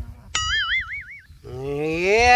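Cartoon-style "boing" sound effect: a sudden pitched twang that wobbles rapidly up and down in pitch for about a second. A man's voice starts near the end.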